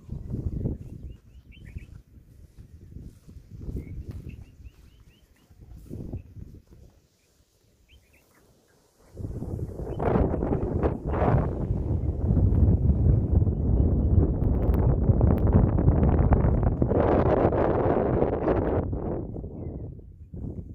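Wind buffeting the phone's microphone, which grows loud about halfway through and stays loud until near the end. A few faint bird chirps come through in the first half.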